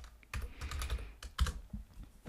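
Typing on a computer keyboard: a run of short, irregularly spaced key clicks.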